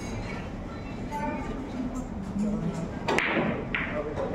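Low murmur of spectators' voices in a pool hall, with a sharp click about three seconds in and a second one about half a second later.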